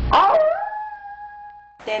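A single long dog-like howl: it falls in pitch, holds one steady note for about a second, then cuts off suddenly. A short low thump comes at the very start.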